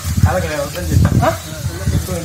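A person talking in short phrases over a steady background hiss.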